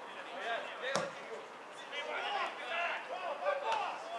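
Footballers shouting and calling to each other during open play, with one sharp thud of a football being kicked about a second in.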